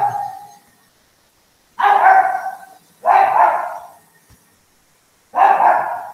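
A dog barking: three loud barks, each starting sharply and trailing off. The first two are about a second apart and the third comes a couple of seconds later.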